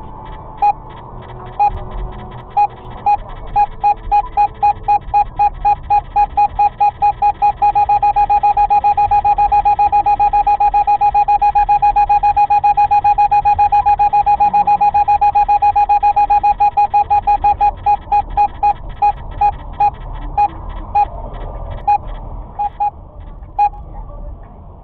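An in-car radar detector beeping as it picks up a police Ramer speed radar. Its single-pitch beeps start slow, speed up to a rapid, almost continuous beeping as the signal strengthens, then slow back down to occasional beeps as the car passes, over faint road noise from the cabin.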